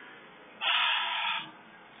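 A man's long, breathy sigh, one exhale of just under a second about a third of the way in.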